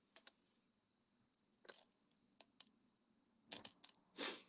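Near silence with a few faint, scattered clicks, bunched near the end, from a silver leaf-link bracelet being handled in the fingers.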